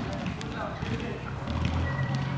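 Indistinct voices in the background with scattered short clicks and knocks; a low steady hum comes in near the end.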